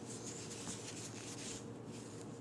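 Faint, soft rubbing of cotton yarn on a metal crochet hook as stitches are worked, over a low steady hum.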